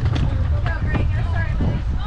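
Wind buffeting the microphone as a steady low rumble, with brief, indistinct voices calling in the background.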